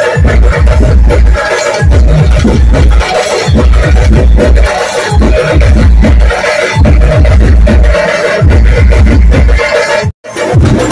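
Loud DJ dance music through a sound system, with a heavy bass beat repeating in steady blocks.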